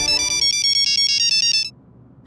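Mobile phone ringing with a quick, high electronic melody ringtone that cuts off abruptly about one and a half seconds in as the call is answered.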